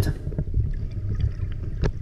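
Muffled low rumble of water movement picked up by a GoPro in its underwater housing, with a sharp click near the end.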